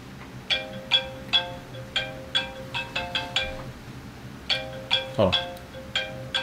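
Mobile phone ringtone: a quick tune of short pitched notes, played once, then, after a pause of about a second, starting over. A man answers "Hello" near the end.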